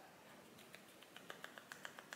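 Faint rapid ticking, about seven or eight light clicks a second, starting a little under a second in, from a makeup brush worked in a small plastic jar of loose mineral powder.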